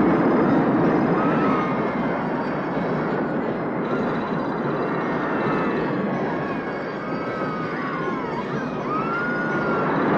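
A roller coaster train running along its track with a steady rushing rattle. Short rising-and-falling screams, likely from the riders, come again and again over it.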